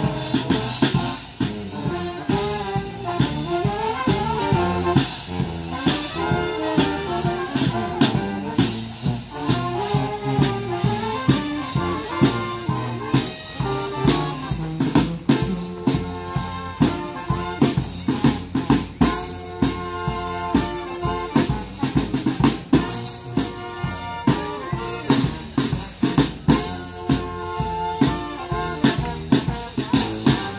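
Small live brass band playing an upbeat tune: sousaphone bass line under trumpets and other horns, with drums keeping a steady beat.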